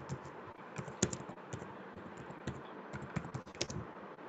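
Typing on a computer keyboard: an uneven run of keystroke clicks, bunched in short flurries, over a steady background hiss.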